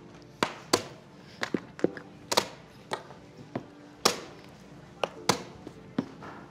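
Plastic chess pieces being set down on a board: about a dozen sharp clacks at uneven intervals, the loudest about four seconds in, over soft background music with held notes.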